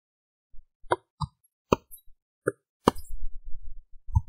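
A handful of short, separate computer mouse clicks, about five in three seconds, as the editor's property panel is scrolled and a field is selected. A low rumble of handling noise follows in the last second.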